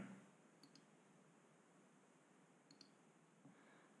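Near silence with two faint computer-mouse clicks, one about half a second in and one near three seconds.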